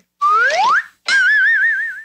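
Comedy whistle sound effect: a quick upward slide in pitch, then a warbling whistle tone held for about a second.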